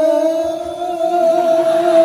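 A man's voice singing sholawat into a microphone, holding one long sustained note with a slight wavering ornament. The note dips in loudness briefly about half a second in, then swells back.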